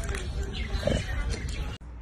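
A steady low rumble with scattered small clicks, and a short vocal sound about a second in. It cuts off suddenly near the end.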